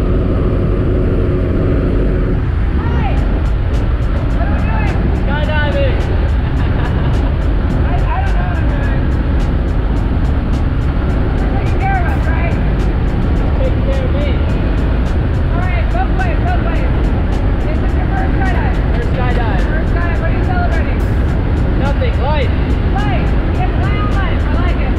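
Steady, loud drone of a propeller jump plane's engine heard inside the cabin during the climb. Voices are raised briefly over it now and then.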